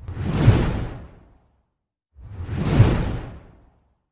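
Two whoosh sound effects of the kind used for slide transitions, each swelling quickly and fading over about a second and a half, the second starting about two seconds after the first.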